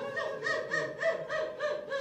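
A high voice repeating short syllables, each falling in pitch, in a steady run of about four a second.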